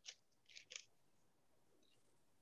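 Near silence: room tone with three faint, brief rustles in the first second.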